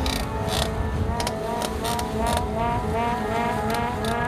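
Electronic music: a quick repeating rising synth figure over a beat, with sharp percussive hits.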